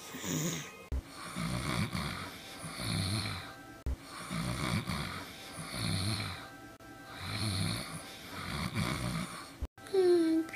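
A person snoring, one snore about every one and a half seconds in an even rhythm.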